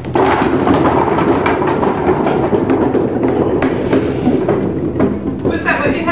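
A mass of small rubber super balls bouncing and clattering together on a wooden hallway floor and walls, a dense, continuous rattle of many quick knocks.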